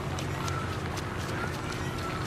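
A quick series of light hand slaps and claps from an elaborate two-person handshake, about three a second, over a low steady hum.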